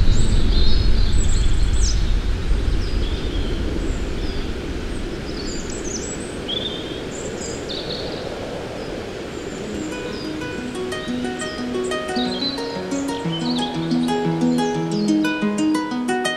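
Birds chirping and calling over a low rushing noise that fades away during the first few seconds; about ten seconds in, a rhythmic melody of plucked string notes comes in and grows louder, the opening of a new piece of music.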